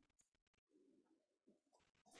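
Near silence: a pause with no audible sound.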